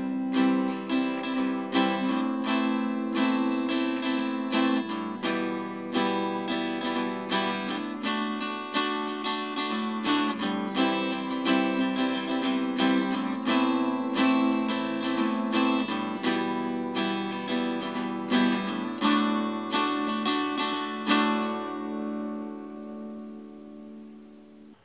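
Archtop hollow-body guitar strummed in a steady rhythm through a C, A minor, E minor, D chord progression, the last chord left ringing and dying away near the end.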